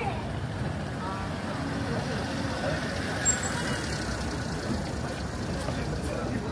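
City street traffic noise from a motor vehicle at a crossing, with passers-by talking now and then. There is a short sharp sound about halfway through.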